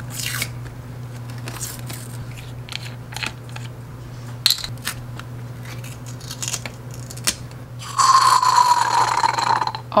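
Plastic shrink band and foil seal being peeled off a marinade bottle's neck: scattered small crinkles, clicks and scratches. About two seconds from the end a louder sustained tone sets in, sinking slightly in pitch.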